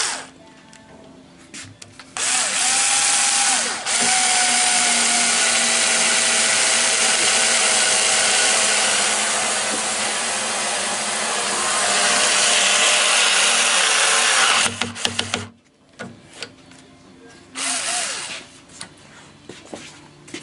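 Black & Decker KC460LN 3.6 V cordless screwdriver, with its motor and planetary gearbox whirring under load as it drives a long screw into a door lock faceplate. There is a short burst first. Then comes a steady whir of about thirteen seconds, starting two seconds in, with a brief break near four seconds and its pitch falling slightly. Another short burst comes near the end.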